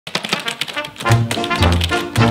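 Rapid clicking of keys being typed on a computer keyboard. About a second in, music with heavy low bass notes comes in under the clicking.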